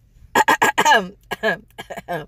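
A woman coughing: a quick run of coughs about a third of a second in, then a couple of shorter ones.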